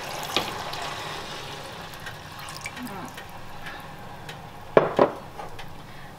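Chicken stock poured from a glass measuring jug into a pot of curry, a steady splashing pour of liquid into liquid. About five seconds in come two short, sharp knocks.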